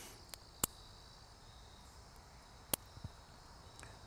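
A few sharp clicks as the small tools of a Victorinox Swiss Army Midnite Mini Champ pocket knife are handled, two of them louder, over a faint steady high-pitched chirring of insects.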